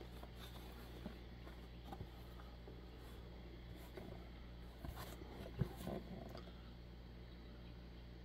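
Faint handling of a cigar box as it is turned over in the hands, a few light taps and rubs, the clearest about five seconds in, over a steady low hum.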